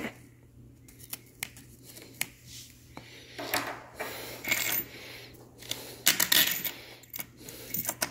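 A long steel Allen-head bolt with loose washers being handled: several light metallic clicks and clinks scattered through, with two short stretches of scraping and rubbing, the longer one a few seconds in.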